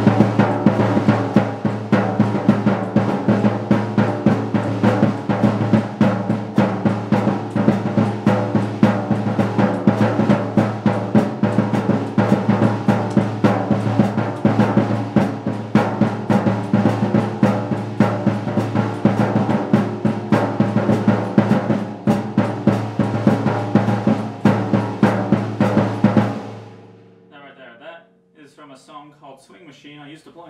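First Act acoustic drum kit played in a swing-style New Orleans groove, dense snare, bass drum and cymbal strokes with the drums ringing. The hi-hat is broken and cannot open all the way. The playing stops about a second and a half before the end and rings out.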